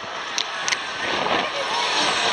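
Zierer Starshape fairground ride in motion: a steady rushing noise that grows louder, with two sharp clicks near the start. Voices shout over it near the end.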